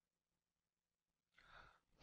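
Near silence, with a faint short intake of breath near the end, just before the narrator speaks.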